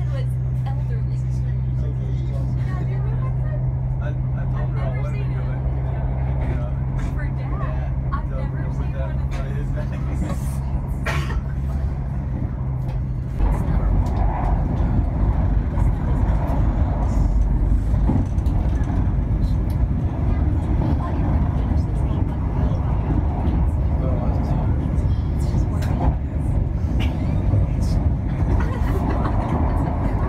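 Running noise heard inside a passenger train travelling at speed: a steady low hum with a droning tone for the first half, then the drone cuts out suddenly and a louder, rougher rumble of the train's running takes over.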